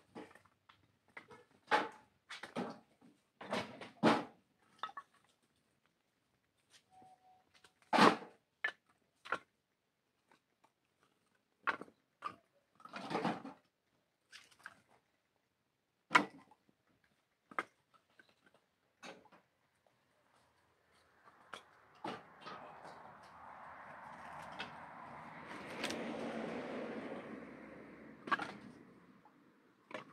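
Split firewood knocking against wood as pieces are stacked onto a woodpile: a run of sharp, irregular knocks. In the last third a steady rushing noise swells and fades away.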